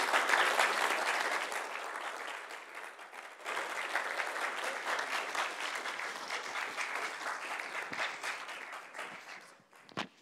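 Audience applauding: a dip about three seconds in, then a second swell that dies away near the end.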